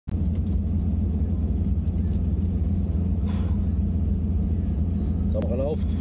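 Ferrari 250 GT Drogo's V12 engine idling steadily, heard from inside the cabin as a low, even rumble.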